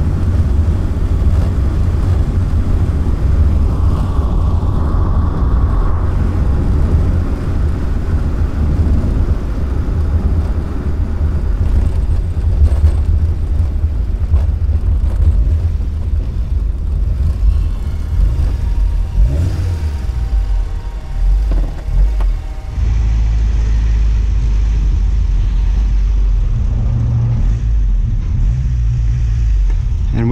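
Open-top 1965 Alfa Romeo Giulia Spider 1600's twin-cam four-cylinder engine pulling the car along the road, under a heavy low rumble of wind and road noise. About two-thirds through the sound wavers and dips as the car slows, then settles into a steadier, lower engine note.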